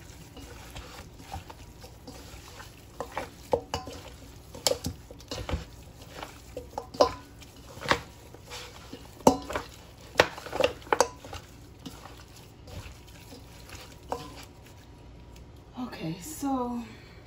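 Gloved hands turning and rubbing seasoned beef ribs in a stainless steel bowl: irregular knocks and clacks of meat and bone against the metal, a few louder ones in the middle.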